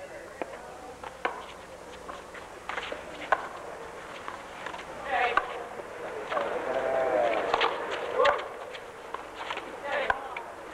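Handball rally: sharp, irregular slaps of a small rubber ball struck by hand and rebounding off a concrete wall and floor, one louder hit about three seconds in, with voices shouting from the court.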